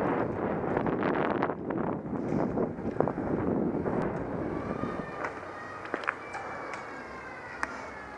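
Wind rushing over the microphone of a moving bike-mounted camera, mixed with road rumble. About five seconds in it eases, and a few sharp knocks and faint high tones that fall slowly in pitch come through.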